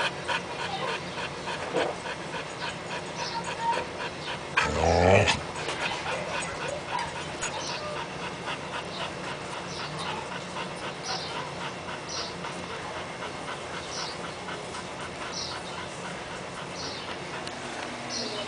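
Adult Siberian husky panting fast and steadily. Short, high, falling squeaks recur every second or two, and a louder, brief pitched call comes about five seconds in.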